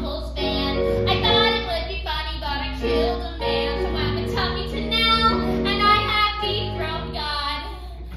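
Live stage singing: several voices sing a song together in held, stepping notes.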